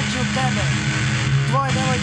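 Short bits of people's voices over a steady low hum.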